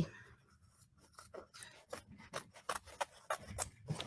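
Scissors snipping through fabric in a quick, irregular run of small cuts, starting about a second in: trimming the excess appliqué fabric away from the tack-down stitching.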